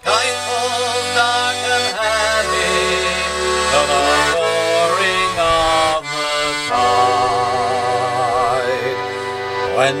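Button accordion playing an instrumental break: a melody over bass chords that change every two seconds or so. A man's singing voice comes back in right at the end.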